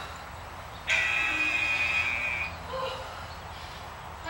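Interval timer giving one steady electronic buzz, about a second and a half long, starting about a second in: the signal that a 45-second work interval is over.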